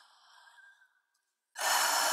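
A faint breathy hiss fades out, and after a brief silence a loud breath-like rush of noise, like a heavy exhale, cuts in suddenly about a second and a half in.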